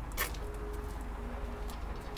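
Low steady background rumble with a faint steady hum, and one sharp click about a fifth of a second in.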